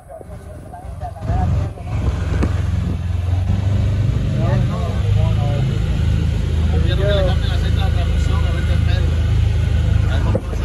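Small boat's outboard motor running underway, a steady low drone that builds up over the first two seconds and then holds, with people's voices over it.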